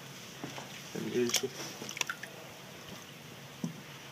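Water in a plastic storage tub disturbed as a camera water housing is lowered in and held under: a few faint splashes, with short sharp drips or knocks scattered through.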